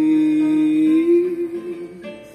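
A man's singing voice holding one long note at the end of a sung line, the pitch lifting slightly about a second in before the note fades.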